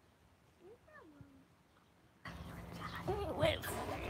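Near silence for about two seconds, broken about a second in by a faint, short call that rises and falls in pitch. After that, background noise and a voice come back in.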